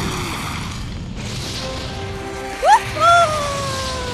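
Animated-series soundtrack: music with sound effects, a burst of rushing noise in the first second, then a sharp rising cry or glide about two and a half seconds in that turns into a held call, slowly falling in pitch.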